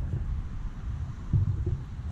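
Wind buffeting the camera microphone: a steady low rumble that swells briefly a little past the middle.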